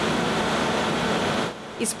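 Steady machinery noise of a running gas-pumping unit in a compressor station hall: an even hiss with faint steady tones that drops away about a second and a half in.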